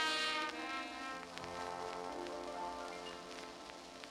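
A Dixieland jazz band's closing chord, led by brass, held and slowly fading away at the end of a tune, with faint vinyl record crackle underneath.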